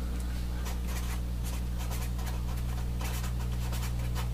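Felt-tip marker writing on paper, faint scratchy strokes as a letter and arrow are drawn, over a steady low hum.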